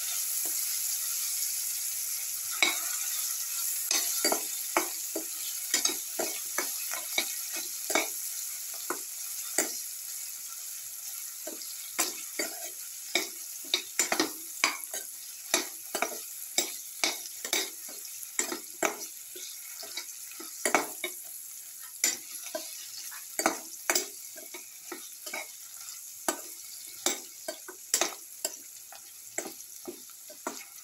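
Cauliflower florets and spinach frying in oil in a stainless steel pan, sizzling, while a spatula stirs them with many short taps and scrapes against the pan. The sizzle slowly fades as the stirring goes on.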